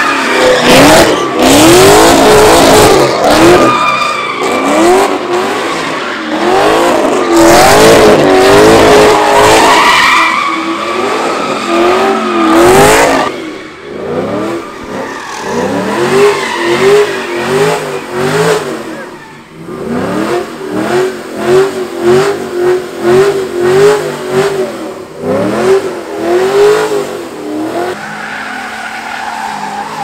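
Cars doing donuts and burnouts: engines revving hard, their pitch swinging rapidly up and down, over squealing, skidding tyres. The loud surges come and go, pulsing quickly through the second half and easing near the end.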